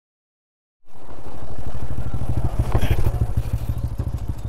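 Motorcycle engine running at low speed with a steady, even pulsing beat, cutting in about a second in after silence. There is a brief clatter near the three-second mark.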